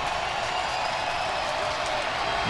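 Steady stadium crowd noise: an even wash of many distant voices, with no single cheer standing out.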